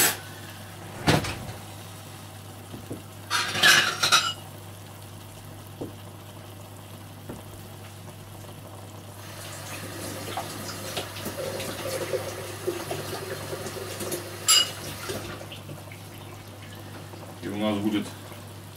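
Kitchen utensils clattering: a spoon and pan knocking and clinking, with a sharp knock about a second in and a short run of clatter around four seconds in. A steady low hum runs underneath.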